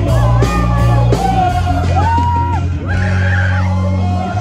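Live band music played loud through the sound system, with sustained bass notes under a sung melody, and a crowd singing along and yelling.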